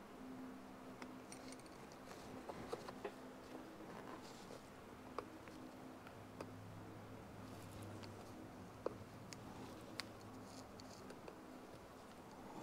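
Faint, scattered clicks and light scrapes of tape-wrapped pliers working the chrome bezel rim of a Yamaha CT-1 tachometer, crimping it back down onto the metal case, over a faint steady hum.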